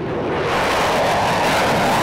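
F-16 fighter jet taking off on afterburner: loud jet noise that builds over the first half second, then holds steady as the jet climbs out.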